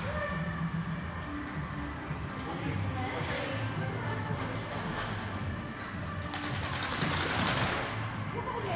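Faint voices and background music over a steady low hum, with a loud burst of splashing water in the last couple of seconds.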